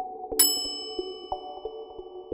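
A bright chime strikes once about half a second in, its high ringing tones dying away over about a second, over light background music of short plucked notes.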